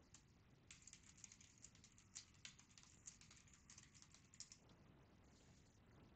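Faint computer keyboard typing: a quick, uneven run of key clicks lasting about four seconds, over near-silent room tone.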